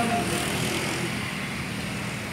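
Steady outdoor background noise, an even hiss with a low rumble, easing off slightly in level.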